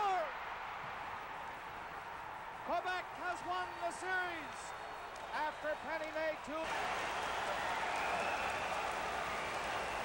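A broadcast commentator's voice in two short stretches over steady arena background noise. The background noise steps up suddenly about two-thirds of the way through, at an edit.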